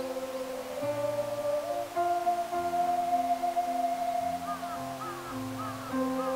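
Ocarina ensemble playing a slow melody in long held notes over a recorded guitar and piano accompaniment.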